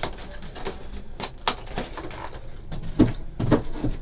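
Handling noises on a tabletop: a few short knocks and clicks, a pair at about a second in and a louder cluster near three seconds, as card packs and packaging are picked up and set down.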